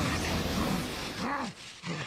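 Anime soundtrack: a character's beastlike growling snarls over a dense wash of sound effects, fading sharply about a second and a half in.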